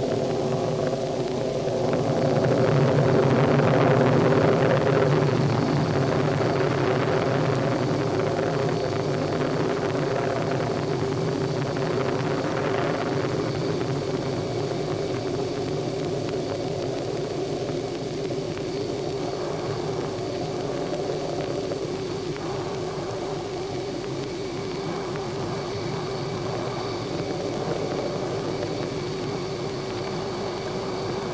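Steady rumbling roar of a rocket in powered flight, swelling a few seconds in and then slowly easing off.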